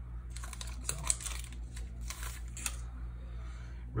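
Hockey trading cards being handled and thumbed through one after another: a quick run of light clicks and card-on-card slides that thins out after about two and a half seconds.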